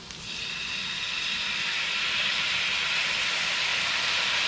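Fish sauce sizzling as it is spooned into a hot pan of fried chicken wings; the hiss starts a moment in and grows louder over the first couple of seconds, then holds steady.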